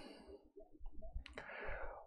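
A few faint, short clicks in a lull, followed by a soft brief rustle, such as small handling and writing noises.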